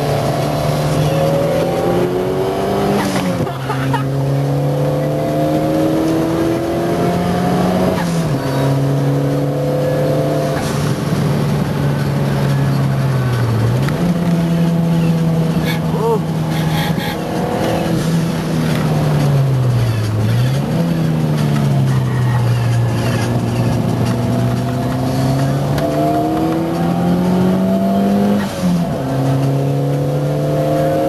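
Cosworth car's engine running hard on a track lap. Its pitch climbs under acceleration, drops sharply about 3 and 8 seconds in and again near the end, and dips and climbs back twice in the middle.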